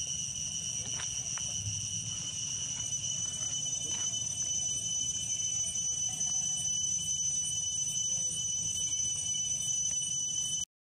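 Steady, high-pitched insect chorus, a continuous ringing drone at an even level, with a few faint clicks about one second and four seconds in.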